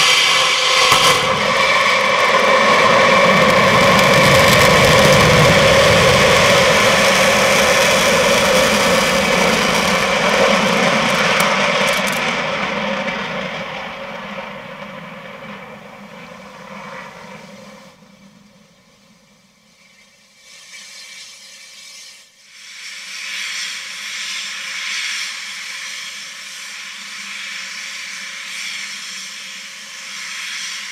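Delta II rocket lifting off close by: the engine roar starts suddenly, stays loud for about twelve seconds, then fades as the rocket climbs away. A quieter, steady rushing noise comes back about two-thirds of the way in.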